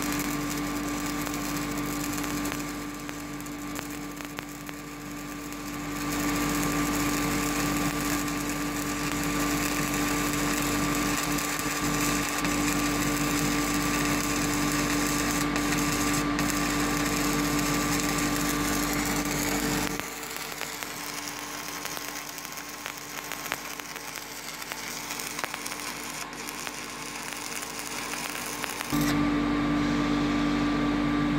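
Stick-welding (MMA) arc of a 3.2 mm electrode on steel tube, crackling steadily. It goes quieter from about three to six seconds in and again from about twenty seconds in, and stops about a second before the end.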